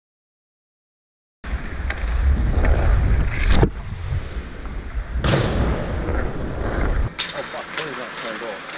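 Wind buffeting an action camera's microphone as the wearer skates across an ice rink, a loud low rumble with sharp knocks of hockey sticks and pucks. It starts suddenly about a second and a half in, and the rumble stops near the end, leaving quieter rink noise.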